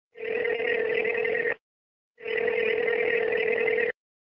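Two long buzzing electronic tones, each about a second and a half, with a short silent gap between them.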